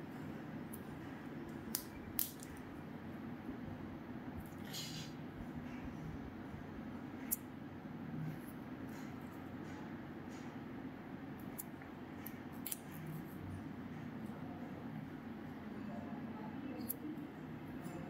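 Quiet room tone with a steady low hum, broken by about half a dozen faint, sharp clicks and a short hiss about five seconds in, from gloved hands handling acupuncture needles and their guide tube.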